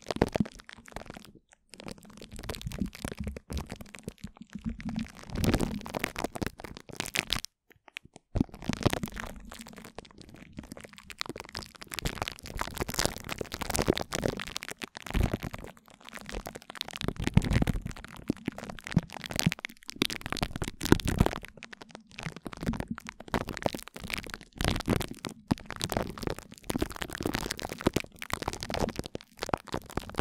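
Glue stick dabbed and rubbed on a plastic-wrapped microphone grille, right on the mic: irregular sticky crackles and pops over a low rubbing rumble, with a couple of brief pauses.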